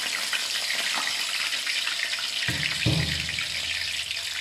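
A piece of boiled chicken sizzling in hot oil in a wok, a dense, steady crackle. A low rumbling bump comes in about two and a half seconds in.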